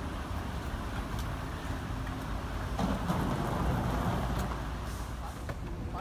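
Street traffic noise beside a city bus at a stop: a steady rumble of road vehicles with a slight swell in the middle, and faint voices in the background.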